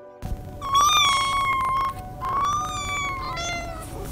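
A cat meowing: two long, drawn-out meows and then a shorter one that rises at the end, over a steady low background noise.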